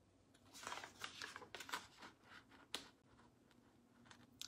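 Faint handling noises: a run of light rustles and small clicks over about two seconds, then quiet room tone.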